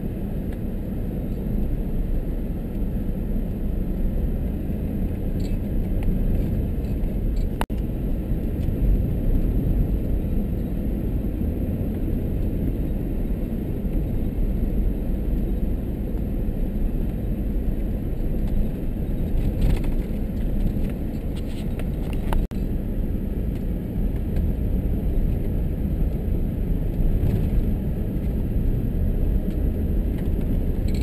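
Vehicle driving on a gravel road, heard from inside the cab: a steady engine and tyre rumble, with a few short clicks and rattles here and there.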